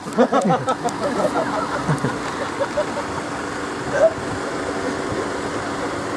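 Steady hum of an idling engine, with people's voices and a few sharp clicks in the first second and a half and a brief voice again about four seconds in.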